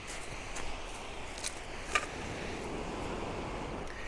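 Steady hiss of sea surf and wind on a pebble beach, with a few sharp clicks of pebbles knocking underfoot as someone steps across the stones.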